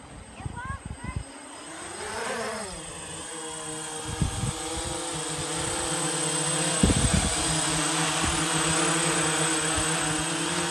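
Quadcopter's electric motors and propellers buzzing in flight. About two seconds in the pitch rises and falls, and the sound grows steadily louder as the craft comes down close. A few low thumps are heard along the way.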